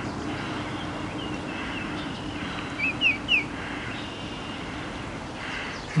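A bird chirping: a few faint thin notes about a second in, then three quick, louder chirps about three seconds in, over a steady low background hum.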